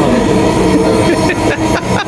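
Inside a Dhaka Metro Rail carriage: the electric train's steady hum and whine, several held tones over low rumbling noise.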